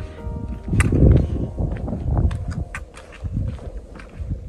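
Footsteps crunching irregularly on a dirt and gravel trail, with low rumbling handling and wind noise. Faint background music plays underneath.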